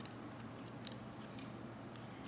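Faint rustling and a few light ticks of construction paper being handled in a small room.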